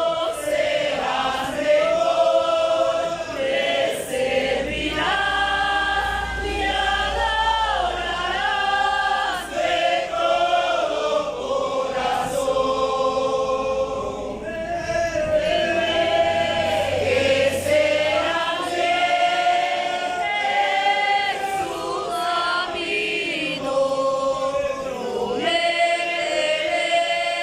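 Congregation singing a hymn together, many voices in long held and gliding notes, phrase after phrase.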